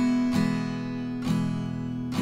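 Acoustic guitar strummed on an E major chord in a pop pattern of down- and upstrokes, several strums ringing into one another.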